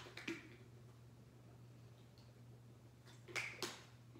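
Quiet room with a steady low hum. Two small clicks right at the start as a plastic water bottle is opened, then two short drinking sounds from the bottle about three and a half seconds in.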